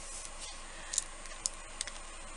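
Small cured-resin ice cubes clicking lightly against each other and the work surface as they are gathered up by hand: a few short, sharp clicks in the second half.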